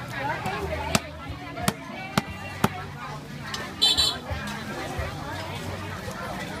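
Cleaver chopping fish on a thick wooden chopping block: four sharp knocks, spaced about half a second to a second apart, in the first half. A brief buzzing rasp follows about four seconds in, over steady market chatter.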